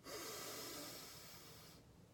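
A woman taking one long, deep breath in, heard as a soft airy hiss that fades and stops just before two seconds in.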